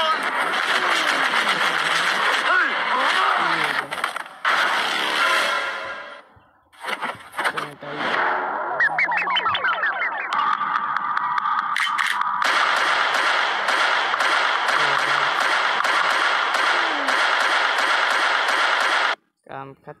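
Busy comedy-sketch soundtrack: voices mixed with dense, rapid crackling sound effects. A rising warble comes about nine seconds in, followed by a steady high tone for about two seconds. The sound cuts off suddenly about a second before the end.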